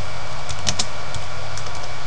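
Keystrokes on a computer keyboard: a handful of light, irregular key clicks while a word is typed, over a steady low electrical hum and hiss.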